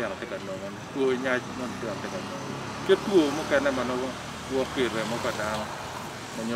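A man speaking in Acholi in a steady run of phrases, over a faint low rumble.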